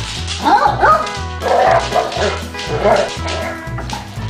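Basset hounds yipping and barking in play, the loudest calls about half a second and one second in, over background music with a steady bass line.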